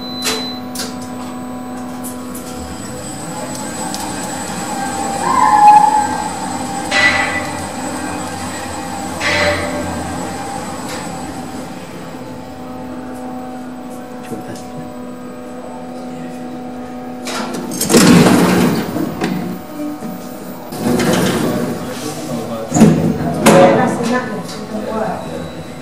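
Traction lift heard from on top of the car as it travels the shaft at full rated speed, about one and a half metres a second: a steady running hum with a low motor tone. Louder rushing and rattling comes in bursts over the last several seconds.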